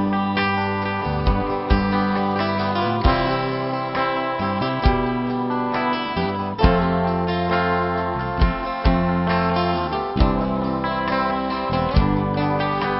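Live band playing an instrumental break without vocals: an acoustic guitar with bass guitar and drums. Sharp drum hits fall every second or two over held chords and a steady bass line.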